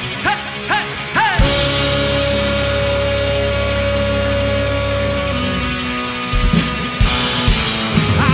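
Live rock band with electric guitar and drum kit. After a few short swooping notes, the full band comes in about a second and a half in on a long held chord, with drum fills near the end.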